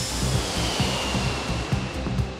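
Jet airliner noise from a Boeing 747 on landing approach: a broad rush with a high whine that falls slowly in pitch, over background music with a steady beat.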